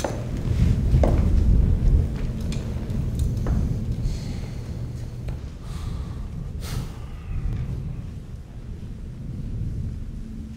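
A steady low rumble, heaviest in the first couple of seconds, with a few faint clicks scattered through it.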